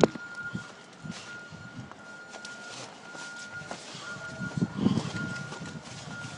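A steady high beep repeating about once a second, each beep a little under a second long, over outdoor background noise. A muffled low rustle comes about three-quarters of the way through.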